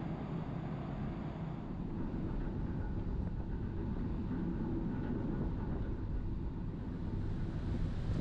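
Car ferry underway at sea, heard from the open stern deck: a steady low rumble of the ship with wind and wake noise.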